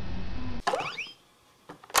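Electronic toy sounds through a small speaker: a low hum that cuts off about half a second in, then a brief electronic chirp of quick rising and falling pitch glides, typical of a talking toy's shut-down jingle.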